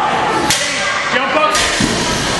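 Cable speed rope slapping the concrete floor: two sharp whip-like cracks about a second apart, over a background of crowd voices in the hall.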